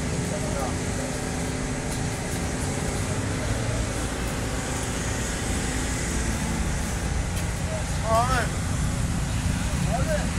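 Steady city street noise of traffic with a low hum. A person's voice is heard briefly about eight seconds in.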